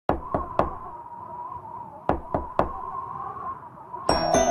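Knocking on a door: three quick knocks, then three more about two seconds later, over a faint held tone. It is the knocking sound effect that opens the song's recording before the music comes in.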